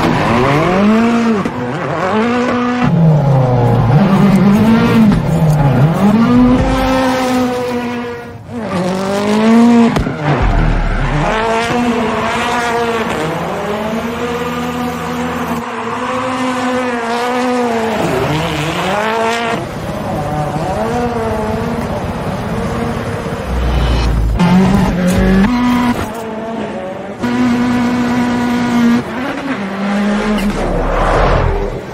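Engine of a 650 hp modified Ford Fiesta rally car revving hard, its pitch climbing and dropping over and over as it is driven sideways, with tyre squeal.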